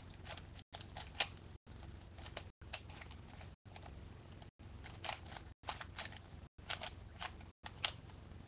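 Plastic 3x3 Rubik's cube being turned rapidly by hand during a speed solve, its layers clicking and clacking in quick irregular runs. A steady low hum sits underneath, and the audio cuts out briefly about once a second.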